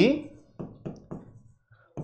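Marker pen knocking and tapping against a whiteboard while writing: several short, sharp taps between about half a second and a second and a half in.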